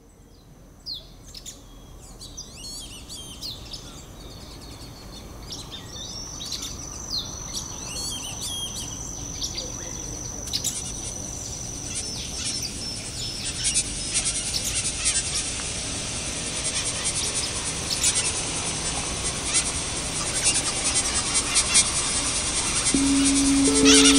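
Parrot calls and chirps, used as the recorded sound of the piece, fading in and growing steadily louder. Scattered high chirps and a held high whistle come first; from about halfway through, a dense, high chattering fills in.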